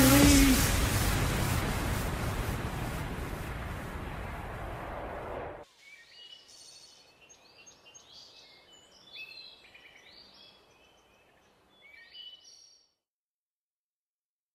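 The end of an electronic dance track: a wash of noise that fades steadily and cuts off abruptly about five and a half seconds in. Faint birdsong chirps follow for about seven seconds.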